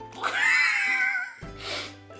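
A woman's high-pitched whimper of pain, about a second long, as a suction lip plumper pulls on her lip, followed by a short hiss; background music plays underneath.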